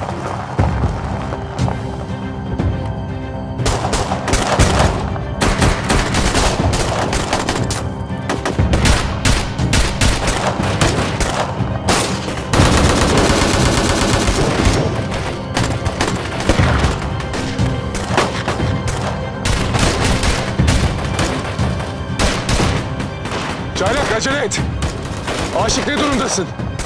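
A sustained firefight: rapid rifle fire in bursts, shots following one another through the whole stretch, heaviest about halfway through, over a background music score.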